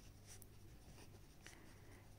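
Faint scratching of a pen writing on notebook paper.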